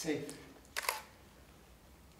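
A single-lens reflex camera shutter fires once, a quick double click just under a second in. A short voice sound comes right at the start.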